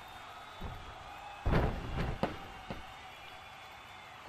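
Wrestling impact sound effects: a soft thud, then a loud heavy slam about a second and a half in, followed by three lighter, sharper hits.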